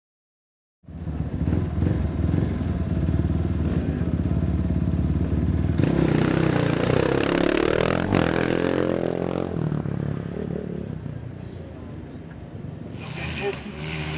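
KTM 690 single-cylinder off-road motorcycle engine running at low revs. Its pitch dips and rises again between about six and nine seconds in, with a sharp click near eight seconds. It eases off after ten seconds and grows louder near the end.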